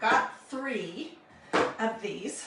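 A woman talking in short phrases that the recogniser did not write down.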